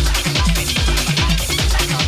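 Electronic dance music played by a DJ, with a steady, evenly repeating kick drum and bass beat under busy higher synth and percussion sounds.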